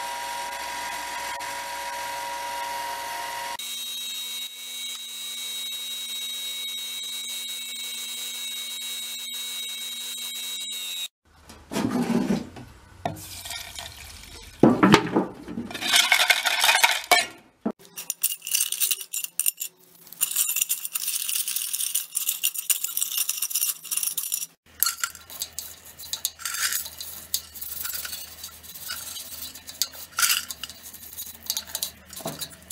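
Bench grinder running steadily with its wire wheel for about the first eleven seconds. Then irregular clinking and swishing as loose steel bearing balls and small parts are stirred and washed in a stainless steel pan of liquid.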